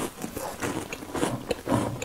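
Close-miked chewing of calcium milk biscuits soaked soft in milk tea, a quick, irregular run of chews.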